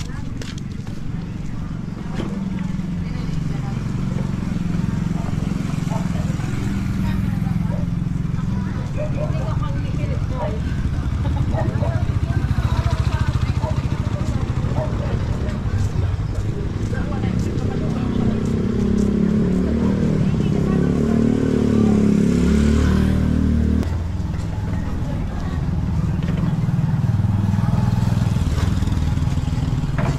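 Motorcycle tricycle engines running close by in the street, a steady low rumble with background voices. About two-thirds of the way in, one engine grows louder for several seconds, then drops away abruptly.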